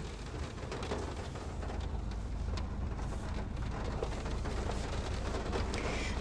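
Steady background noise, a low rumble with a faint hiss and a few soft ticks.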